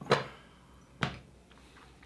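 Two short knocks about a second apart, from glassware or a bottle being handled and set down on the tasting table.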